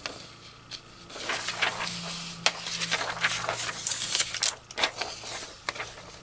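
Loose vintage magazine pages being handled and shuffled by hand: irregular paper rustling with small crinkles and taps as the sheets are moved. A faint steady low hum sits underneath from about a second and a half in.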